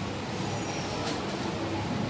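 Steady low rumble and hiss of background room noise, with no clear single source, and a brief faint rustle about a second in.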